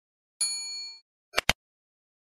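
A single bell-like ding, rung once and fading within about half a second, followed by two sharp clicks in quick succession.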